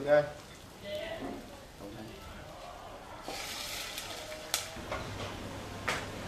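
Plain water poured into hot oil with fried shallots and turmeric in a pot, giving a burst of sizzling about three seconds in that lasts about a second, followed by a couple of sharp clicks of a utensil against the pot.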